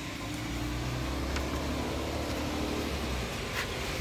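Recycling truck's engine running at a distance, a low steady hum that fades out a little after three seconds in, with a few faint clicks.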